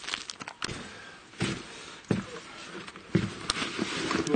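Footsteps and handling noise: a handful of irregular sharp knocks and dull thuds over a low background rustle.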